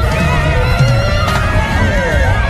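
Reggae band playing an instrumental passage: heavy bass and drums under a high lead line whose pitch wavers with vibrato.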